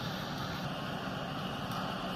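Steady background hum and hiss with no distinct event.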